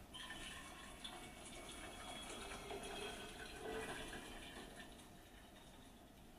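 Water poured in a thin stream from a gooseneck kettle onto coffee grounds in a paper-filtered pour-over dripper: a faint steady trickle that swells about halfway through and tapers off near the end.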